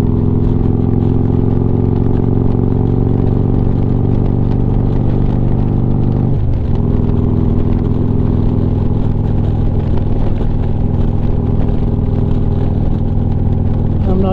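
Harley-Davidson Street Glide's V-twin engine running at a steady cruise, heard from the rider's seat, with a brief break in its note about six seconds in.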